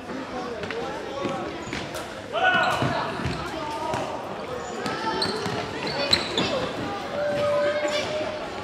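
Futsal ball being kicked and bouncing on a wooden sports-hall floor, with players and spectators shouting in the echoing hall; a loud shout comes about two and a half seconds in and a sharp single thud about six seconds in.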